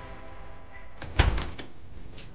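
Apartment front door being opened: one sharp clack of the latch or lock about a second in, followed by a few lighter clicks.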